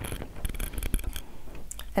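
Scratching and rubbing with a few small clicks as the foot control's plastic plug and cord are handled at the side of a sewing machine.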